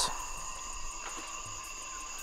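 Forest insect chorus: several insects holding steady, unbroken high-pitched tones at different pitches.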